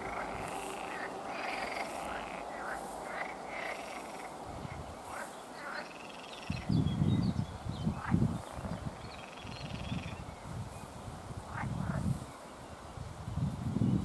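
Frogs calling at a pond, a scatter of short croaks. About halfway through comes a series of low, muffled rumbles, louder than the calls.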